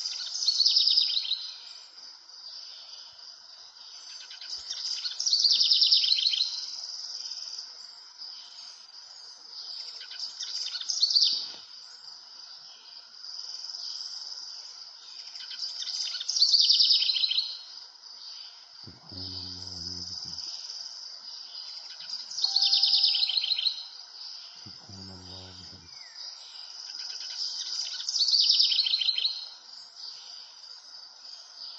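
A bird singing a short, high, trilled phrase that falls in pitch, repeated six times about every five to six seconds, over a steady high background buzz.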